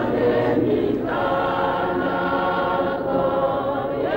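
A chorus of many voices singing together in long, held notes.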